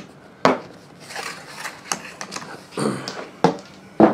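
Metal sockets and an aluminum socket rail handled on a countertop: a sharp knock about half a second in, then scattered clicks and clacks.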